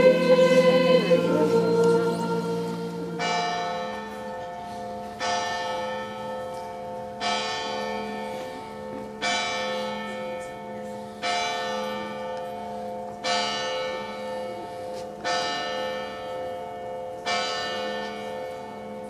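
A church bell tolling at a slow, even pace, about one stroke every two seconds, eight strokes in all, each ringing on as it fades. Voices singing fade out in the first few seconds before the tolling begins.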